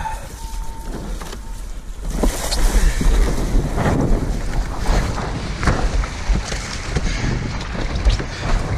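Wind buffeting the microphone and water rushing and splashing around a windsurf board, growing louder about two seconds in.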